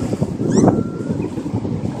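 Wind buffeting the phone's microphone in an uneven low rumble, over the wash of surf breaking at the shore.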